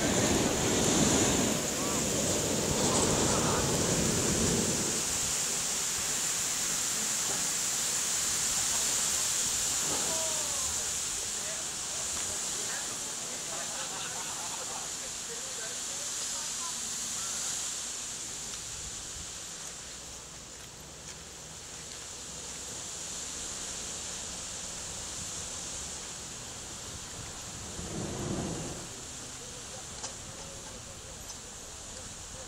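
A steady outdoor hiss like wind on the microphone, with indistinct voices in the first few seconds and again near the end.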